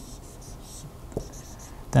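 Dry-erase marker writing on a whiteboard: faint scratchy strokes as a line and a letter are drawn, with one soft tap a little past halfway.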